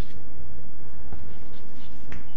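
Chalk on a chalkboard: a few short strokes as a small unit label is written, over a steady low hum.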